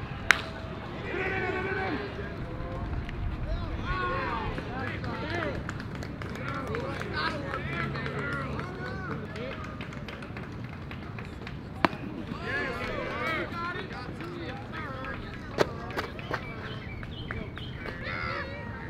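Baseball game ambience: players and spectators chattering and calling out, with no clear words. It is broken by a few sharp single pops as pitches reach home plate. The loudest comes just after the start, and another comes about 12 seconds in.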